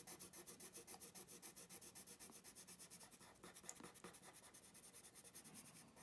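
Green coloured pencil shading back and forth on paper, colouring in an area: a faint, quick, even rhythm of about six strokes a second.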